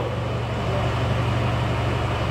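A steady low machine hum holding level throughout, with no single event standing out.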